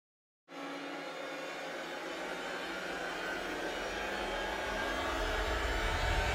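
A cinematic riser sound effect for a title card: silence for about half a second, then a hissing swell over a low rumble that grows steadily louder.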